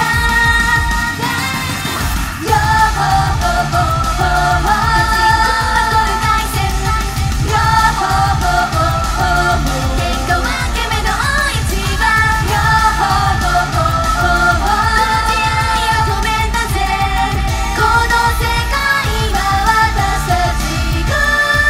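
Japanese idol pop song performed live: a girl group sings into microphones over a loud pop backing with a steady beat.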